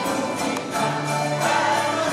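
A small choir of voices singing together in unison, accompanied by strummed cavaquinhos and an acoustic guitar in a steady rhythm.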